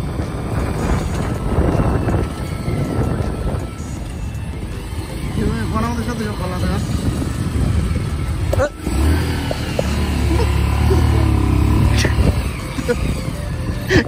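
Street traffic of motorcycles and cars moving past, a constant low rumble, with a steadier engine hum for a few seconds near the end.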